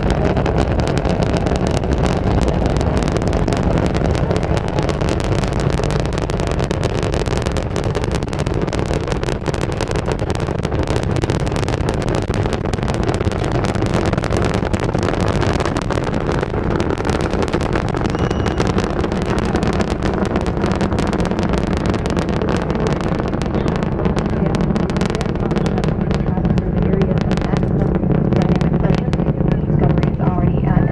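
Space Shuttle Discovery's solid rocket boosters and main engines during ascent, heard from about three and a half miles away: a loud, steady, deep rumble with continuous crackling.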